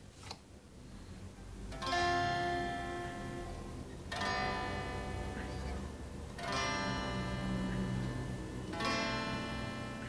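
Solid-body electric guitar with a capo on the third fret, played clean: four chords struck a little over two seconds apart, each left to ring into the next, as a song's intro. A faint tap comes just before the first chord.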